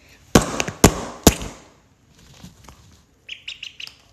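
Three sharp, loud bangs in the first second and a half, then a quick run of short, high peeps from a yellow duckling near the end.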